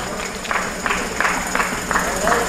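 Rhythmic hand clapping, about three claps a second, starting about half a second in.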